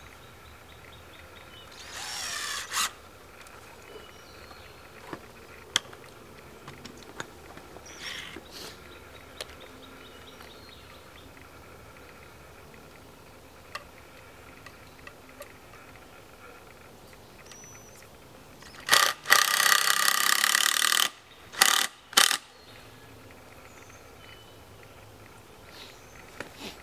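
Cordless drill driving three-inch exterior deck screws through a wooden French cleat into a tree trunk. There are short, quieter whirs early on and a loud drive of about two seconds near the end, followed by two quick short bursts.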